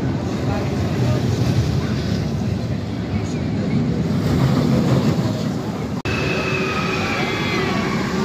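Steel roller coaster train rumbling along its track on the Icon launched coaster, with wind on the microphone. After a sudden cut about six seconds in, distant voices with rising and falling high calls are heard over the ride noise.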